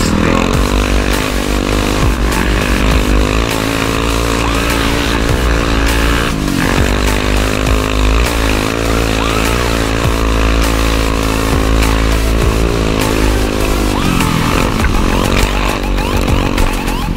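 2006 Bombardier DS 650 X quad's single-cylinder four-stroke engine running under changing throttle, its pitch rising and falling as the rider accelerates and eases off, with a dip in pitch near the end.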